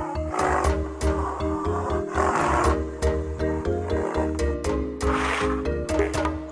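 Rhinoceros calls: three rough, noisy bursts, about a second, two seconds and five seconds in, over background music.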